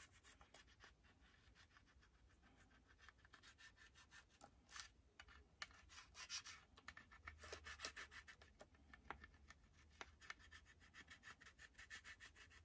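Faint, quick scratching strokes of a scraper burnishing transfer tape and a vinyl decal onto a glass shot glass, a little louder in the middle.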